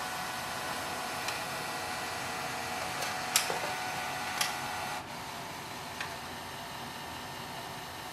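Canon MAXIFY GX4060's automatic document feeder drawing a page through during a scan: a steady motor whir with a few sharp clicks around three and a half and four and a half seconds in, dropping a little quieter at about five seconds.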